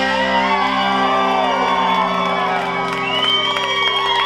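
A live band's electric guitars and bass let a held chord ring out after a final hit, while the crowd cheers and whoops over it.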